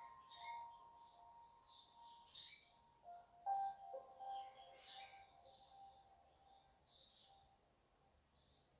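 Faint, quiet meditation background music: soft bell-like tones that ring and slowly fade, with a new tone sounding about three and a half seconds in, over scattered bird chirps.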